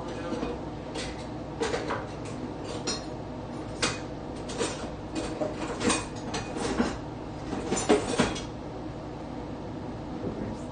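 Kitchenware clinking and knocking: a bowl and utensils being handled for serving soup, a run of sharp clatters with the loudest near the end.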